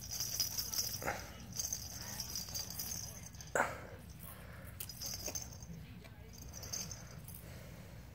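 Soft intermittent jingling from a toy being shaken, coming and going in short spells, with two brief voice sounds: one about a second in and a louder one near the middle.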